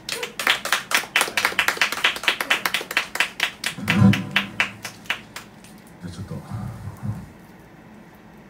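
Applause from a small audience: a handful of people clapping for about five seconds, thinning out and stopping.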